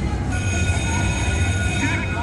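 Video slot machine spinning its reels: a steady electronic tone held for over a second, then a short warbling flourish as the reels stop on a losing spin, over a constant low hum of background noise.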